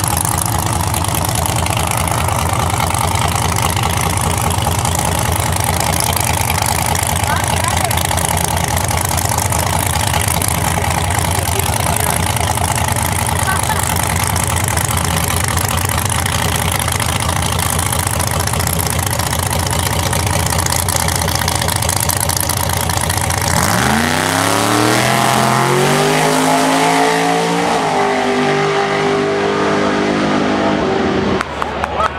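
Drag-race car's engine idling at the starting line with a steady, rapid pulse. About 24 seconds in it launches, revving up hard, dipping in pitch at a gear shift a few seconds later and climbing again as it pulls away.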